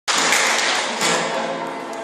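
Acoustic guitar strummed, with a loud chord at the very start and another about a second in.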